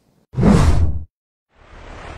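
Two whoosh sound effects for a graphic transition wipe: a loud one about half a second in, lasting under a second, then a quieter, shorter one near the end.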